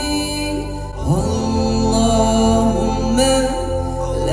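Male nasheed singer singing a slow Arabic supplication live through a PA, drawing out long notes that slide between pitches, over a steady low sustained vocal backing. A new note slides in about a second in.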